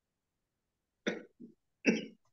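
A person coughing: a cough about a second in, a short smaller one right after it, and a louder cough near the end.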